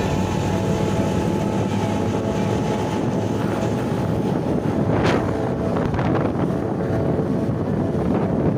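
Wind buffeting the microphone over the engine and road noise of a motorcycle being ridden, with a short sharp sound about five seconds in.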